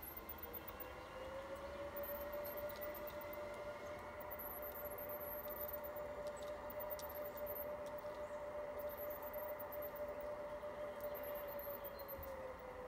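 Garden-railway model electric locomotive running, its motor whine rising in pitch as it speeds up in the first second, holding steady, then starting to drop near the end as it slows. Faint high chirps sound above it.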